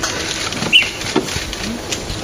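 A single short, high bird chirp with a quick downward flick just under a second in, over scattered soft clicks and patters.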